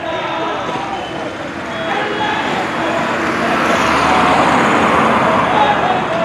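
Roadside traffic noise mixed with the voices of a marching crowd; a passing vehicle swells louder from about the middle of the stretch.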